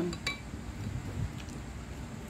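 A few light clinks from a small dipping bowl near the start, then low, steady background noise.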